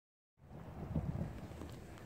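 Low rumbling wind noise on a handheld phone's microphone, starting about half a second in after a moment of silence.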